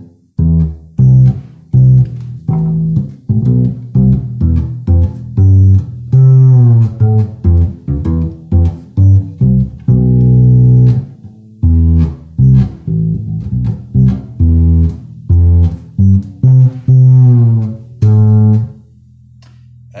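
Electric upright bass played pizzicato: a long run of plucked notes at changing pitches, each with a sharp attack and a short decay, many with a percussive click as the string slaps the fingerboard. The playing stops shortly before the end.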